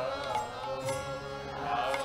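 Devotional music with a voice singing a chant-like melody, its pitch bending and wavering.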